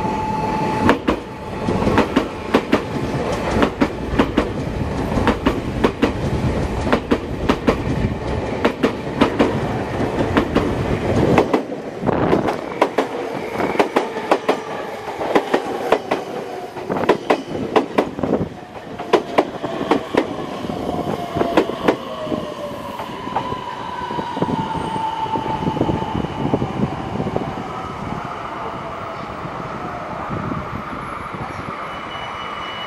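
Electric train rolling slowly through station pointwork, its wheels knocking over rail joints and switch frogs in an uneven run of clacks. A whine falls in pitch in the second half as the clacking thins out.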